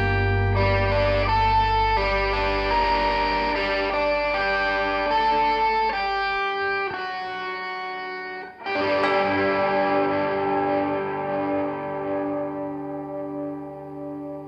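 Live progressive rock band music: a melody of changing notes over a long held low note that dies away about halfway through. After a brief dip about two-thirds of the way in, a fresh sustained chord enters and slowly fades.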